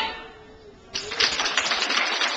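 Step team stepping: a brief lull, then about a second in a sudden, dense run of stomps and hand claps on a hard hall floor, with crowd noise under it.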